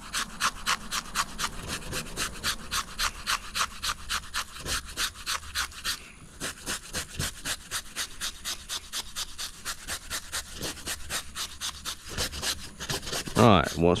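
Stainless steel wire brush scraping scales off a flounder's skin in quick, even back-and-forth strokes, about four a second, with a brief pause about six seconds in.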